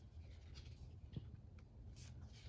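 Faint rustling of paper as a page of a picture book is turned, with a small tick about a second in.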